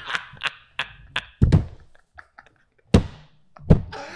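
Laughter trails off, then a few light taps and three heavy, dull thumps on the desk, about a second and a half in, near three seconds and near the end, struck by a host laughing hard.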